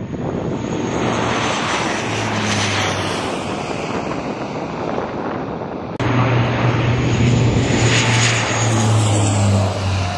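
C-130 Hercules four-engine turboprop running, a steady propeller drone with a low hum underneath, growing louder about six seconds in.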